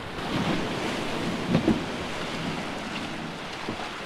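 Small waves washing and foaming over sand and rocks in shallow water, with a couple of faint knocks.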